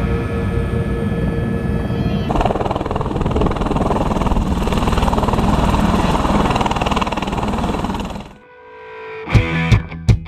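Helicopter engine and rotor noise: a steady whine at first, then an even rush of rotor wash and wind on the microphone that cuts off about eight seconds in. Near the end a strummed guitar track with a steady beat starts.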